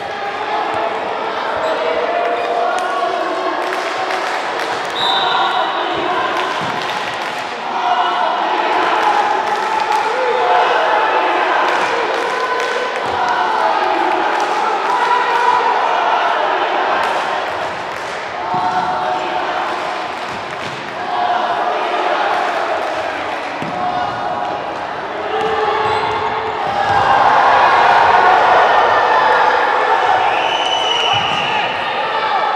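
Futsal ball being kicked and bouncing on a wooden sports-hall floor, with repeated thuds echoing in the large hall. Players', coaches' and spectators' voices call out throughout, getting louder near the end.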